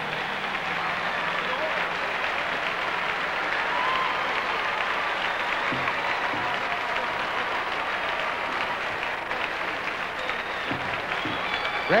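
A large theatre audience applauding steadily, with scattered cheering voices in the clapping.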